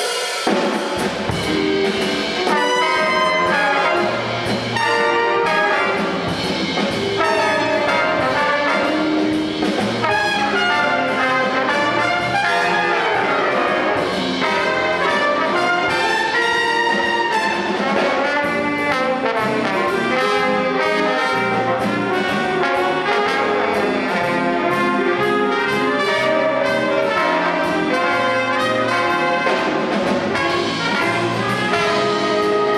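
Jazz big band playing live: saxophone, trombone and trumpet sections together over a drum kit, steady and loud throughout.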